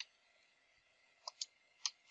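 Computer keyboard keys being typed, a few faint clicks: one keystroke at the start, then after a pause of over a second three more in quick succession.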